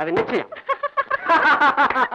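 A man and a woman laughing heartily, in quick repeated pulses that grow louder about halfway through.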